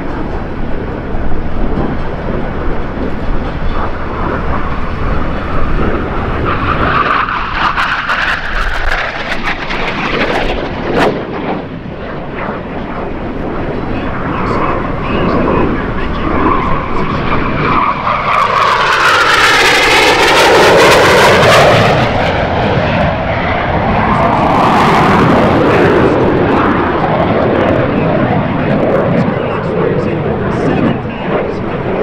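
Jet noise from US Navy F-5N Tiger II fighters, powered by twin General Electric J85 turbojets, flying passes overhead. The sound builds to a loud close pass about twenty seconds in, with a sweeping change in pitch as the jet goes by. A second swell follows a few seconds later.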